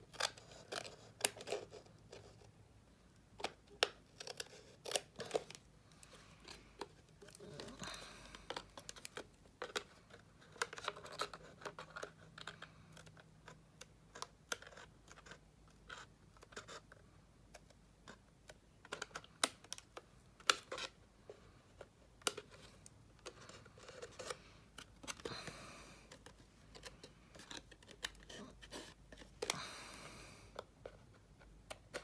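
Small craft scissors snipping cardstock, trimming the overhang off the folded corners of a paper box lid: an irregular run of short, sharp snips and clicks.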